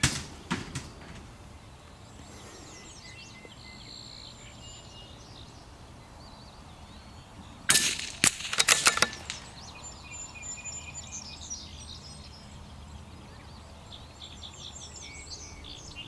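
A single shot from a .22 LR bolt-action rifle (CZ-455 Trainer) about eight seconds in, a sharp crack followed by a run of quick clicks over the next second and a half. Birds chirp throughout, and a few faint clicks come at the very start.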